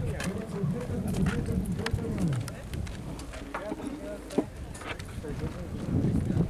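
Indistinct voices of people talking, with a few scattered sharp clicks.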